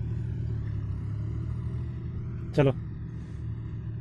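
Tractor engine running, a steady low drone that holds level throughout.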